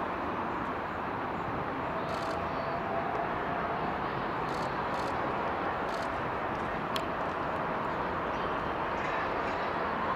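Steady outdoor background noise with no voices, a low even rumble like distant traffic, broken by a few faint sharp clicks.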